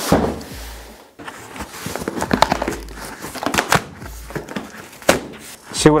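A large cardboard box being torn open by hand: cardboard flaps and tape ripping and crackling in quick strokes, with dull knocks as the box is handled.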